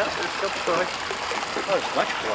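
Water splashing and churning at a pond's surface as a crowd of turtles and koi jostles at the edge.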